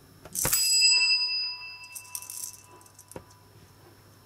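Plastic toy salt and pepper shakers handled and shaken: a knock and a burst of rattling about half a second in, with a bright ringing tone that fades over about two seconds. Then a second, shorter rattle and a single click.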